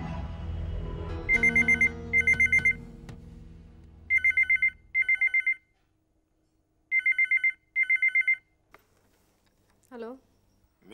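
Corded desk telephone ringing in three double rings, each ring a rapid electronic trill. Background music fades out under the first rings.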